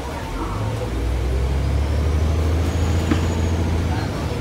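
The Cummins ISM inline-six diesel of a 2000 Neoplan AN440A transit bus pulling under load, heard from inside the passenger cabin: a low, steady drone that grows louder about half a second in and holds.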